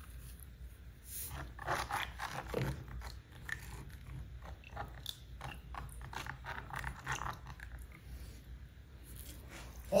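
Potassium salt crystals poured from a can into a plastic tub of water and stirred by hand: a string of small, irregular crunches and scrapes, busiest in the first few seconds. The water is near saturation, so the crystals are not dissolving.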